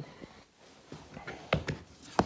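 Lid of a plastic storage tote being unclipped and pulled off: quiet handling, then two or three sharp plastic clicks about one and a half seconds in.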